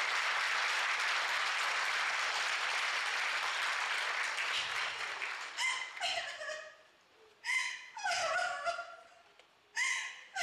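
An audience applauding for about five seconds. The applause then fades out, and a few short, high-pitched vocal sounds with falling pitch follow, each lasting well under a second.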